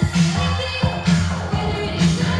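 Loud dance music mixed by a DJ on a laptop and DJ controller, with a strong bass note pulsing about once a second.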